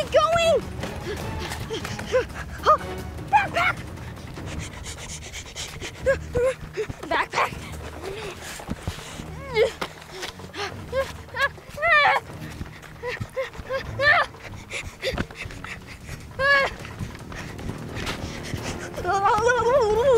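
A boy panting and giving short wordless grunts and gasps as he runs, every second or two, over soft background music.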